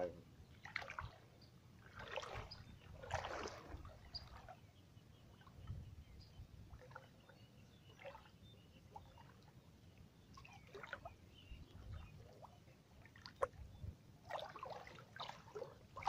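Shallow water sloshing and splashing around a person's legs as he wades and reaches into the water to handle a gill net. The splashes come irregularly with quieter stretches between, and grow busier near the end.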